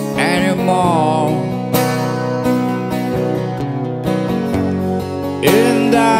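Acoustic guitar strummed in steady chords, with a man's voice singing a short phrase at the start and coming back in near the end.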